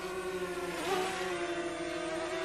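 DJI Mavic Mini quadcopter's propellers and motors humming steadily as it flies fast in Sport mode, the pitch wavering briefly about a second in as the drone changes speed.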